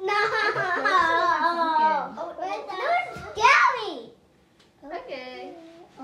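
Young children's voices: loud chattering and vocalizing, with a high squeal that rises and falls about three and a half seconds in, then a brief pause before quieter talk resumes.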